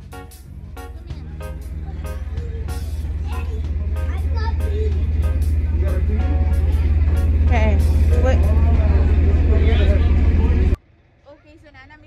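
A tour boat's engines give a heavy low rumble that builds steadily louder as the boat gets under way, with passengers' voices over it. The rumble cuts off suddenly near the end.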